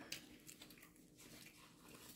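Near silence with faint biting and chewing of a soft filled wrap (a burger-filled flatbread pocket).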